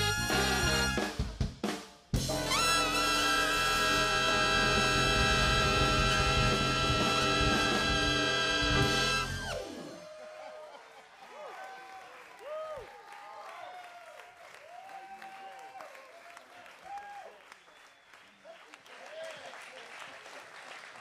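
A big band's saxophones, trumpets and trombones with drum kit play a few short loud chord hits, then one long held final chord that cuts off about ten seconds in. After it comes a much quieter stretch of audience whooping and clapping.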